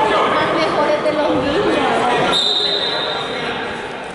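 Spectators talking and calling out in a gym hall. About two seconds in, a referee's whistle gives one steady blast of about a second, restarting the wrestling bout.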